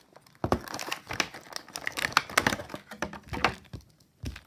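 Thin clear plastic blister packaging crinkling and crackling in a rapid, irregular string of snaps as an action figure is worked free of it by hand.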